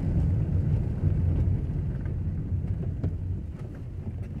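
Low, steady rumble of a vehicle driving along a dirt road, engine and tyres on the unpaved surface, easing off a little near the end.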